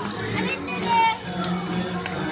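Children chattering and calling out together in a large room, with one child's high-pitched squeal about half a second in, the loudest moment. Faint music with a steady low note runs underneath.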